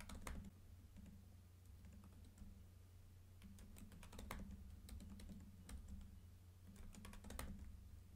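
Faint typing on a computer keyboard: scattered keystrokes with short pauses, over a low steady hum.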